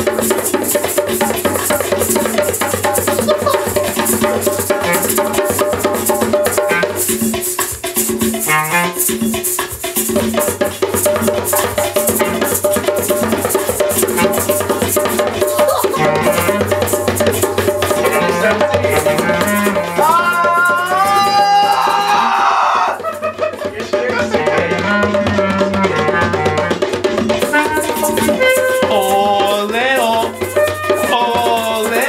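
Live group jam: a djembe struck with bare hands and a shaker rattling fast and steadily, over a backing beat with held low notes. A clarinet plays melody on top, with a few quick rising runs about twenty seconds in.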